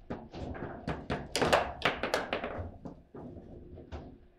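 Table football in play: a quick, irregular run of sharp knocks and clacks as the ball is struck by the plastic men and bounces off the table walls, with rods being spun and snapped; the loudest cluster of hits comes in the middle.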